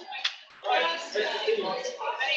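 Indistinct talking, with one sharp click near the start.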